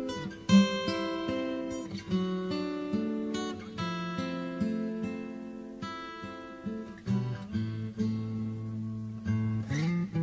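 Acoustic guitar music: plucked notes and chords ringing into one another, with lower bass notes coming in about seven seconds in and a sliding note just before the end.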